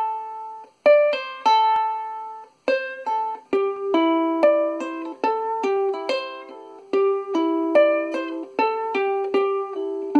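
An Ohana ukulele played solo: short, quick phrases of plucked notes, with fretting fingers pulled off the strings to sound the next notes without re-plucking. The phrases run together into a steadier line from about three and a half seconds in.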